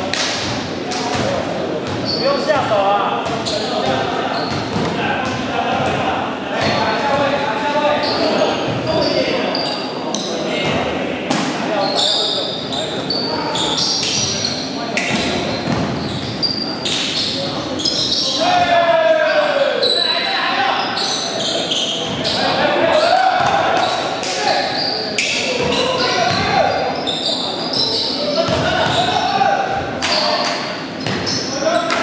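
Basketball game in a large echoing gym: the ball bouncing on the hardwood court, footsteps and short sharp knocks, and players calling and shouting indistinctly throughout.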